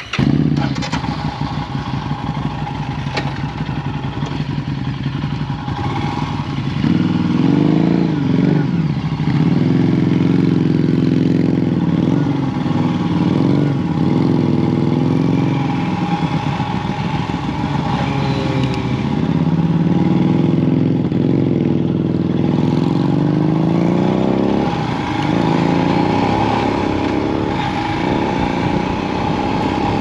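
Royal Enfield Himalayan's single-cylinder engine, heard from the rider's position. It comes in suddenly and runs at low revs, then about seven seconds in the bike pulls away, and the engine note repeatedly rises and falls as it accelerates through the gears.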